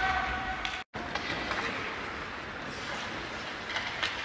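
Ice skates scraping and carving across an indoor rink as several young hockey players skate, a steady hiss that echoes in the hall. A short steady tone sounds in the first second, and the sound cuts out for an instant just before the one-second mark.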